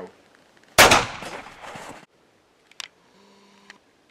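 A single pistol gunshot about a second in: one sharp crack followed by a ringing tail that dies away over about a second.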